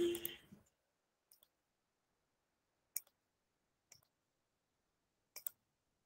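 Faint single clicks of a computer mouse, four of them spaced about a second apart, after a brief louder sound right at the start.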